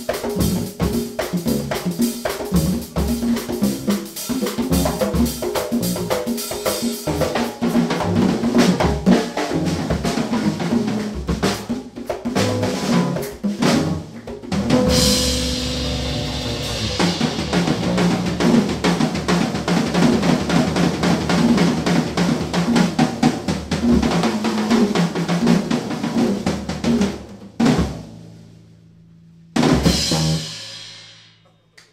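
Live jazz trio of drum kit, kpanlogo hand drums and electric bass, with busy, fast drumming and rolls and a cymbal crash about halfway through. Near the end the band stops short, and after a brief gap there is one more loud hit.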